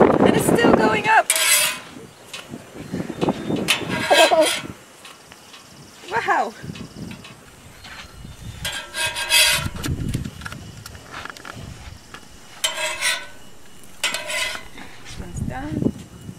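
A metal spatula scrapes the steel top of a flat-top gas griddle several times, a second or so each, as pancakes are slid under, lifted and flipped.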